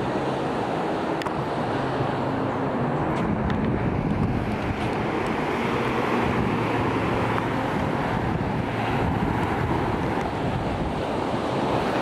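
Baltic Sea surf breaking on a sandy beach as a steady wash of noise, with wind buffeting the microphone.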